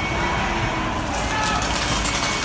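A bus engine running close by, with a crowd's voices over it; about halfway through, a hissing noise comes in and lasts over a second.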